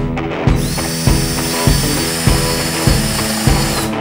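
Cordless drill running at a steady, high-pitched whine from about half a second in until just before the end, spinning on a screw whose head strips. A rock music track with a strong regular beat plays throughout.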